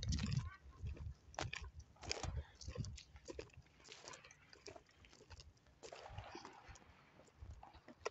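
Distant fireworks popping and crackling faintly at irregular intervals.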